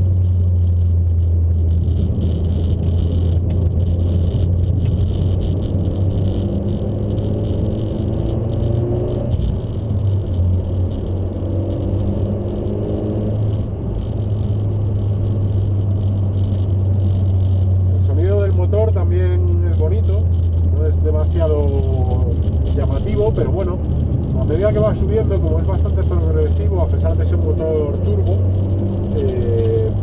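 In-cabin sound of the Peugeot RCZ R's 1.6-litre turbocharged four-cylinder engine under way: a steady low drone, with the engine note rising in pitch as it pulls in the first half. A man's voice talks over it from a little past the middle.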